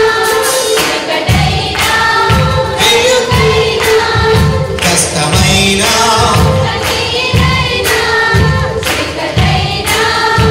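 A mixed group of singers performing a Telugu Christian worship song in unison over a live band with a steady drum beat. The beat drops out for about a second near the start, then comes back in.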